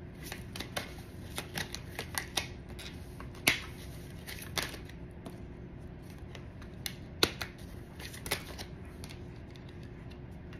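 A deck of tarot cards being shuffled and handled by hand, giving an irregular run of sharp card snaps and slaps, loudest about three and a half seconds in and again about seven seconds in.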